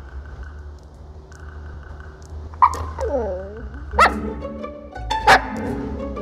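Siberian husky vocalizing: about halfway through, a drawn-out call whose pitch dips and comes back up, then two short, sharp calls about a second apart.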